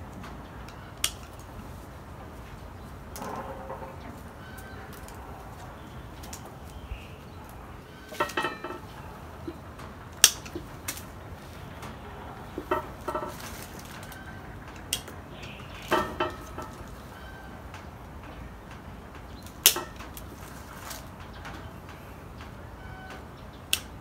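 Bonsai pruning shears snipping twigs off a ficus bonsai: sharp metallic clicks, about eight cuts spread irregularly, some with a short ring of the blades.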